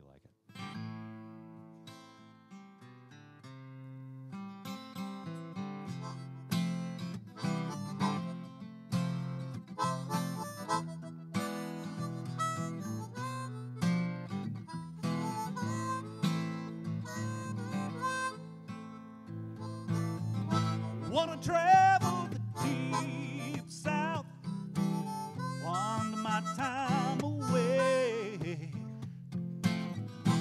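Acoustic guitar strumming and harmonica playing a live instrumental intro to a song. The guitar starts softly and builds over the first few seconds, and the harmonica plays bending, wavering phrases that stand out most in the second half.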